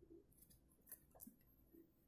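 Very faint rubbing of a pencil eraser on paper, with a few soft ticks.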